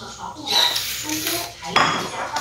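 Dishes being handled on a table: a plastic bento tray shifted with a rough clatter, then a ceramic bowl set down with a sharp knock near the end.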